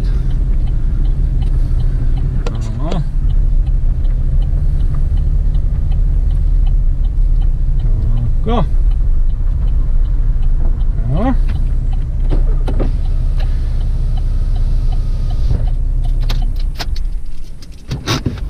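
Car engine and road rumble heard from inside the cabin as the car is driven slowly. Near the end the rumble dies away, with a few clicks.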